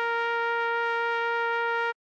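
Synthesized trumpet holding one long steady note over a low sustained accompaniment tone, both cutting off suddenly just before the end.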